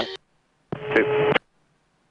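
Clipped cockpit radio transmissions: the end of one call cuts off abruptly, then after a silent gap a one-word acknowledgment, "Two," comes through with a steady low tone under the voice. The audio drops straight to silence between transmissions.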